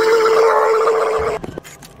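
Laser back-glass removal machine running a pass over an iPhone's back glass: a loud, steady buzzing tone with a hiss above it, which stops about a second and a half in.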